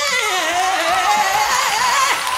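A gospel singer's voice in a wordless run, sliding down in pitch from a held note and then climbing back up.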